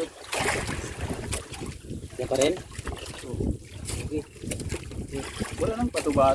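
Wind buffeting the microphone and water slapping against a small bamboo outrigger boat, with scattered knocks. A voice is heard briefly a little over two seconds in.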